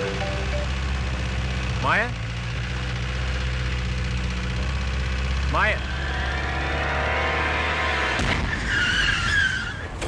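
An open-top jeep's engine runs steadily under two quick rising whooshes. About eight seconds in the low engine drone cuts off with a sudden burst of noise, followed by a short tyre screech: the jeep makes an emergency stop.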